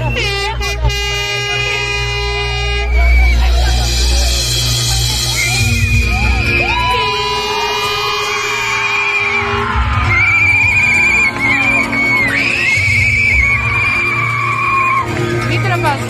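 A live band playing an instrumental concert intro: long held electric guitar and keyboard notes over a deep bass drone, with high wavering screams from the audience.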